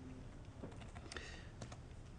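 A few faint keystrokes on a computer keyboard, short scattered clicks over a low room hum.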